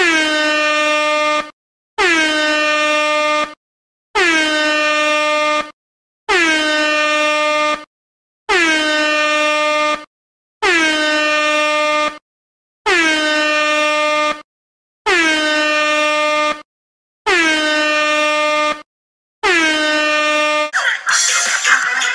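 Meme air horn sound effect blasting ten times in a row, each blast about a second and a half long with a brief dip in pitch as it starts, then holding one steady chord. Loud music cuts in near the end.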